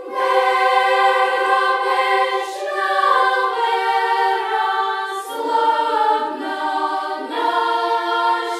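Children's choir singing an Orthodox hymn a cappella in several parts, in long held notes that shift pitch together every two seconds or so. The choir enters together on a new phrase right at the start.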